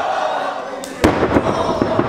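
A wrestler's body slammed onto the ring canvas: one loud, sharp impact about halfway through, with crowd voices around it.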